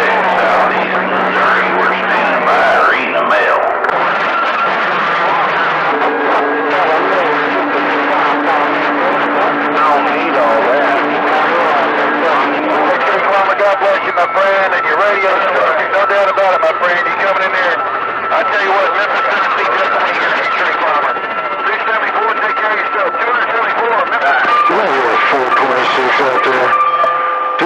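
CB radio receiving long-distance skip on channel 28: several voices overlap, garbled and hard to make out through the static and noise. Steady carrier whistles (heterodynes) run under the voices, with a thin high whistle from a few seconds in to the end.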